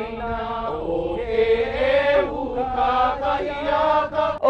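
Many voices chanting together in Hawaiian, holding long notes that slide slowly up and down in pitch.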